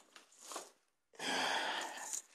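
Near silence, then a soft, breathy rush of noise just over a second in that lasts under a second, like a person exhaling close to the microphone.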